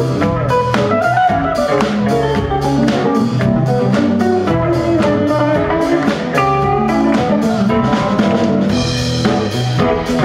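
Live rock band playing: electric guitars, bass, keyboard and drum kit keeping a steady beat.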